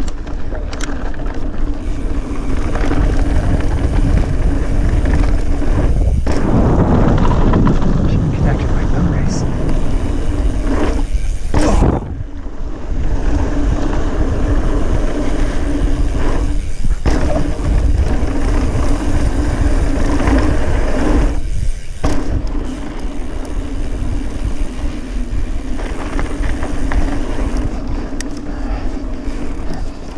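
Mountain bike riding down a rough, rocky dirt trail, picked up by a rider-mounted camera: a steady noisy rush of tyre and trail rattle with a constant hum that drops out briefly several times. A sharp knock stands out about twelve seconds in.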